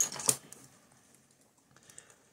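A couple of sharp clicks and taps from hands handling a plastic-shrink-wrapped hardcover case, near the start, then quiet room tone with one faint tick near the end.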